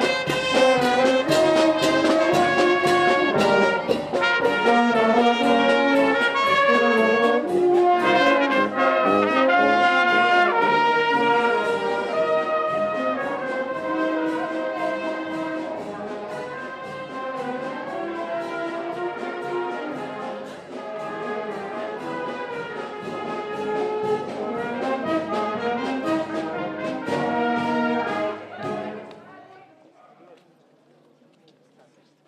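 A marching brass band playing a tune, with euphonium and tuba among the instruments. It grows gradually quieter in the second half and cuts off sharply just before the end.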